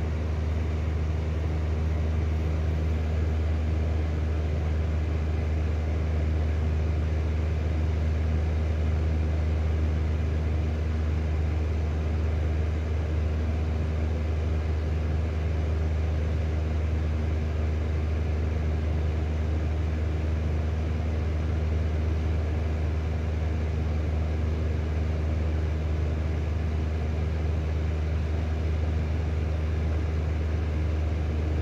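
Lanson 200 mm exhaust fan running steadily with its cover removed: a steady low motor hum with several even tones above it and a hiss of moving air.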